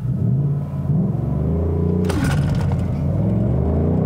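Ford Mustang Bullitt's naturally aspirated 5.0-litre Coyote V8 pulling hard in a launch from a standstill, rising in pitch with a break about two seconds in. The launch is done without launch control and traction control, and it is weak.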